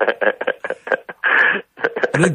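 A caller laughing over a telephone line: a fast run of short laughs with the thin, narrow sound of a phone call, and a breathy patch about a second and a half in.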